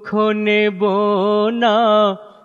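A man singing a Bengali Islamic qawwali, holding long notes with a wavering vibrato in a few sung phrases.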